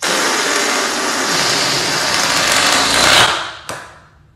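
Air rushing out through the neck of an inflated latex balloon as it deflates, a loud steady buzzing hiss that starts abruptly and dies away after about three and a half seconds as the balloon empties.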